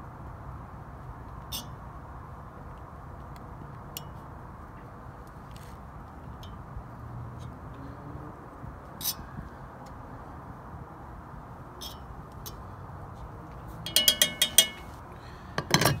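A fork scraping and clicking now and then against a cast iron Dutch oven as dry cake mix is spread in it, over the steady low rush of a propane turkey-fryer burner. Near the end comes a quick run of loud, ringing metal clinks as the fork is tapped against a tin can.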